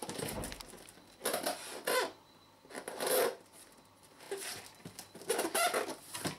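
Cardboard box being handled and turned over, with about five short bursts of scraping and rustling cardboard.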